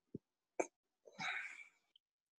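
A person's short breath or throat sound close to a microphone, about a second in, after a faint thump and a sharp click.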